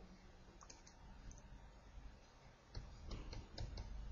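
Faint, irregular clicks and taps of a stylus on a pen tablet while handwriting on screen, starting a little before three seconds in.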